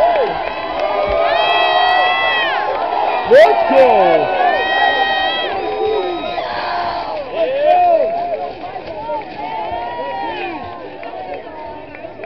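Crowd in the stands at a high school football game cheering and shouting, with a few long held shouts rising above the noise. The cheering dies down toward the end.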